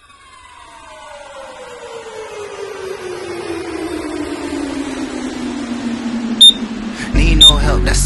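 A slow descending pitch sweep that grows steadily louder for about seven seconds, like an editing transition effect, then two short high countdown-timer beeps about a second apart near the end as a hip-hop track with heavy bass comes in.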